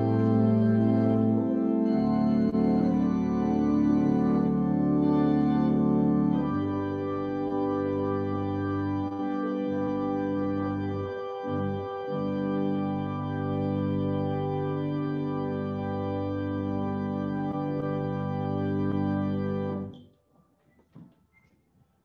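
Organ playing slow, long-held chords that change every few seconds, then cutting off abruptly about two seconds before the end.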